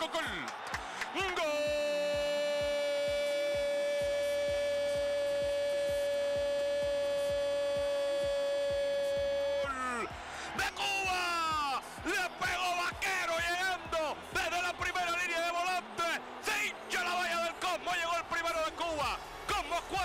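Spanish-language TV commentator's goal call: one long held "gooool" shout lasting about eight seconds, then rapid excited commentary.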